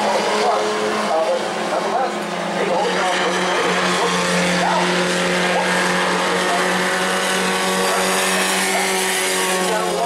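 Bomber-class stock car engines running laps around a short oval, a steady engine drone with one car coming past close near the end.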